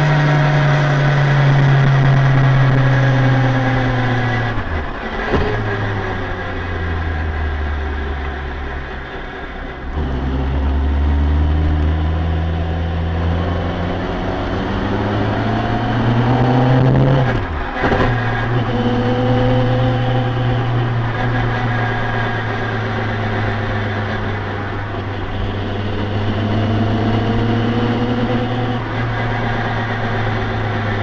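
Classic Mini's engine heard from inside the car, running at low speed with its note slowly sinking and rising with the throttle. Twice, about five and about eighteen seconds in, the note breaks off and drops suddenly before picking up again.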